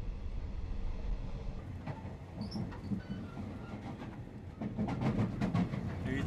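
Steady low rumble inside a railway passenger carriage, with scattered clicks and knocks that come thicker near the end.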